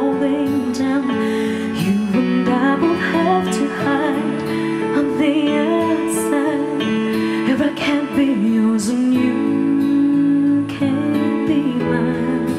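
A female singer performing a slow ballad live, holding long, wavering notes over a sustained instrumental accompaniment.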